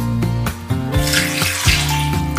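Water poured from a glass jug into a glass bowl of lemons, splashing from about halfway through, over background music.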